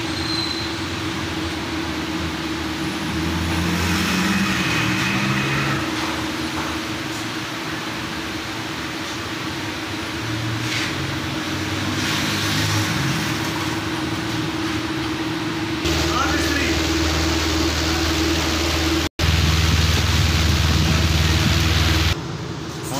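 Steady hum over a mix of traffic-like rumbling, with a deeper low rumble setting in about three-quarters of the way through and a split-second dropout soon after.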